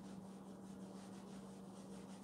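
Cotton pad rubbing back and forth over an eel-skin leather wallet, a faint quick brushing in short repeated strokes, as excess conditioning cream is wiped off. A steady low hum runs underneath.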